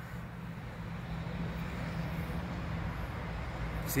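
A steady low mechanical hum over a background rush, slowly growing a little louder.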